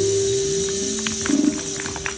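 A live band's last chord ringing out at the end of a song: one held guitar note fading slowly, with a few light clicks and taps as the playing stops.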